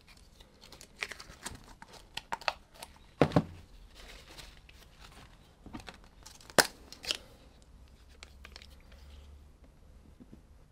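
Plastic paint bottles and cups being handled: scattered clicks, crinkles and rustles, with sharper knocks about three seconds in and again just past six and a half seconds.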